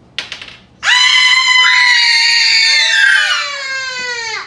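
A child's long, loud, high-pitched shriek, held for about three seconds and sliding down in pitch at the end, just after a few short clicks.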